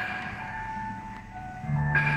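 Yamaha electronic keyboard accompaniment playing a soft instrumental passage of held high notes between sung phrases. Deeper sustained notes come in near the end.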